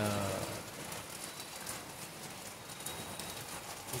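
Steady heavy rain falling, an even hiss with scattered pattering drops.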